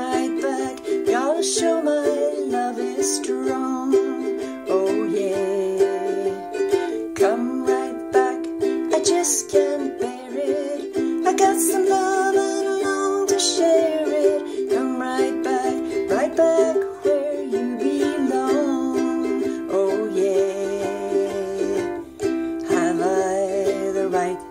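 Ukulele strummed in a steady rhythm through chord changes, with a woman singing over it at times.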